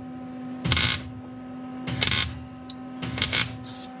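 A welder tack-welding a sheet-steel floor patch: three short crackling bursts of the arc, about a second apart, over a steady hum.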